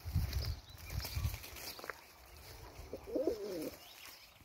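A domestic sport pigeon gives one short, wavering coo about three seconds in. Low rumbling bursts come before it in the first second and a half.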